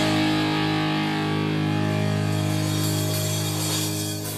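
Punk rock instrumental: a distorted electric guitar chord struck and left ringing, held steady and easing off slightly near the end.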